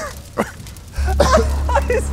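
A man coughing and gagging after swallowing something that burns the back of his throat, while another man laughs. A low background music bed comes in about halfway through.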